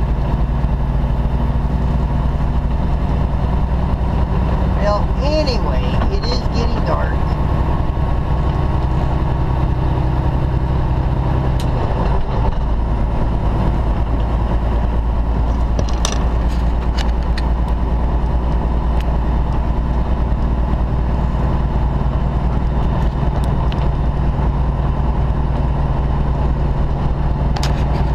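Steady drone of a semi-truck's diesel engine and road noise heard from inside the cab while driving on the highway. The engine tone changes briefly about twelve seconds in, and a few light clicks come a little after.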